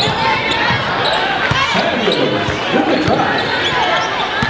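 Live gymnasium game sound: a basketball bouncing on the hardwood court, with the voices of a crowd filling the hall.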